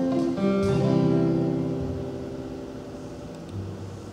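Live worship band playing an instrumental passage. Strummed acoustic guitar chords with bass and keyboard; a chord about half a second in rings and slowly fades, and a new low note comes in near the end.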